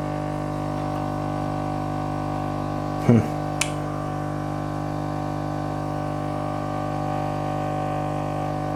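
A steady electrical hum, a low buzz with many overtones that holds unchanged throughout. About three seconds in there is a short vocal sound, followed by a small click.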